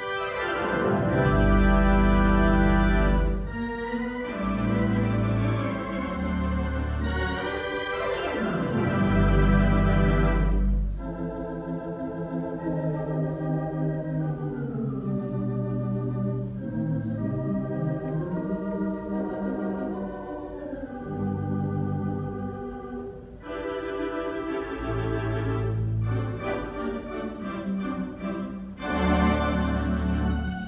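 Organ playing a slow piece in full held chords over deep pedal bass notes: loud for the first ten seconds or so, softer sustained chords through the middle, then swelling louder again near the end.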